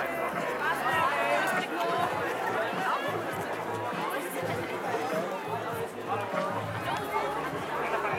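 Many people talking at once, a busy chatter of overlapping voices, with music playing in the background.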